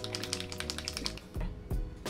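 Background music with a rapid run of light clicks and taps over the first second or so, then a few more: a small sunscreen bottle being shaken and handled in the hand.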